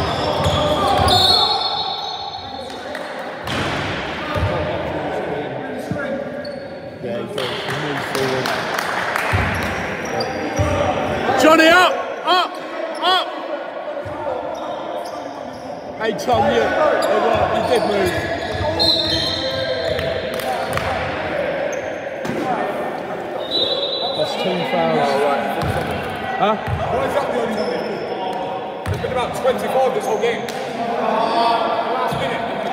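A basketball dribbled and bouncing on a wooden sports hall floor during play, with players' voices calling out, all echoing in the large hall.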